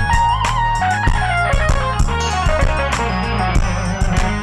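Roland Fantom workstation playing a full arrangement: a melodic lead line with pitch bends and vibrato played live on the keys, over steady bass notes and a drum beat.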